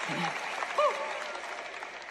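Studio audience applauding, the applause fading away, with a brief voice heard above it.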